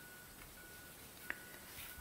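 Faint handling of tarot card decks on a cloth-covered table, with one short click a little past the middle as a deck is set down.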